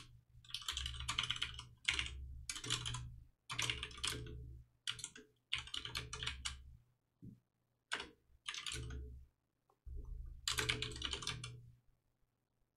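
Typing on a computer keyboard in quick bursts of keystrokes, broken by short pauses.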